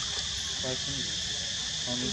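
Steady, high-pitched drone of insects, with faint voices briefly audible behind it about a third of the way in and near the end.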